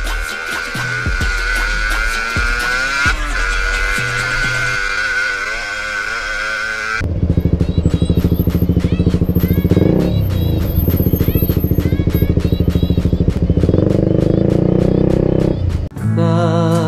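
Music with a wavering held tone for the first seven seconds. After an abrupt change, an orange KTM motorcycle's engine runs with a fast, even pulse while stopped in traffic. Its pitch dips and comes back up around the middle of that stretch.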